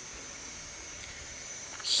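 Steady, high-pitched droning of insects over an even background hiss.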